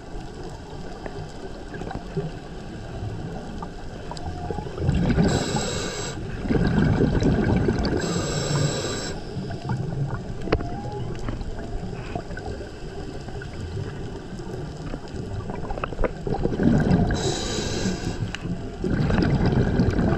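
Humpback whale song heard underwater: faint calls that glide up and down in pitch over a steady underwater hiss and crackle. Three times a burst of rushing noise comes in, about five, eight and seventeen seconds in, from a diver's exhaled regulator bubbles.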